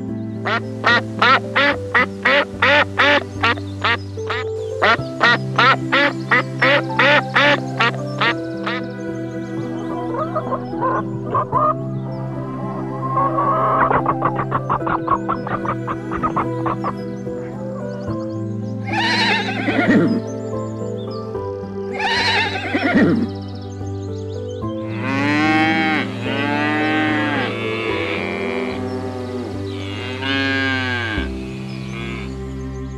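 Duck quacking in two rapid runs of about four quacks a second, then chickens calling, with two falling squawks past the middle, and cattle mooing near the end, all over steady soft background music.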